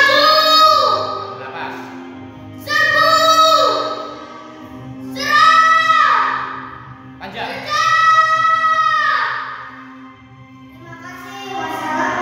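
A child's high voice declaiming a poem in four long, drawn-out calls, each held and then falling away at the end, over a steady low musical backing.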